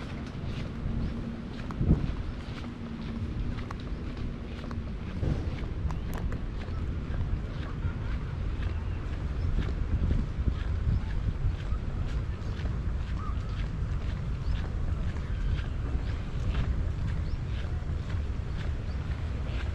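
Wind buffeting the microphone with a steady low rumble. Faint regular footsteps of someone walking on paving run underneath. A low steady hum fades out about five seconds in.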